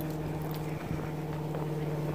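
Footsteps on a paved path, with a few faint taps, over a steady low hum.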